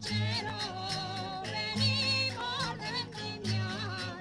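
Traditional Spanish folk dance music: a singer's wavering, high voice over an instrumental accompaniment with a steady, repeating bass pattern.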